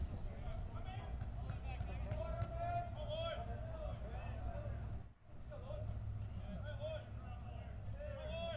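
Faint, distant voices talking over a steady low hum, with a brief drop to near silence about five seconds in.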